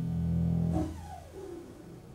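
Double bass: a low sustained note dies away about a second in, followed by a faint sliding note falling in pitch.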